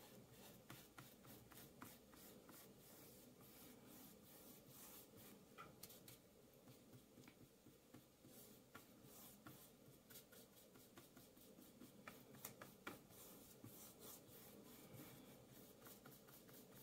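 Faint, near-silent scratching of a paintbrush stroking paint across a small canvas, in many short, repeated strokes.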